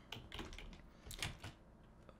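Faint typing on a computer keyboard: a few scattered keystrokes in small clusters.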